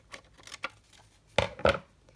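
Scissors cutting through a sequined pocket piece, with small clicks followed by two sharp snips in quick succession near the end.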